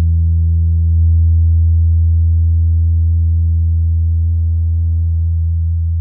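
A single low electric bass note held and left ringing through the cab-simulator pedal, sustaining steadily and fading only slightly. It turns a little brighter about four seconds in.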